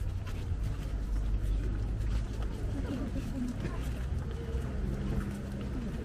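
Indistinct chatter from a group of people walking together, over a steady low rumble.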